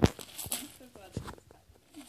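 A sharp click right at the start, then faint voices and a few small knocks.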